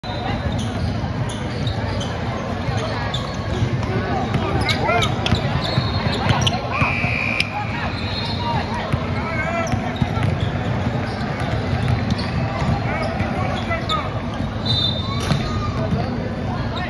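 A basketball bouncing and being dribbled on a hardwood gym court during play, with voices echoing around the hall.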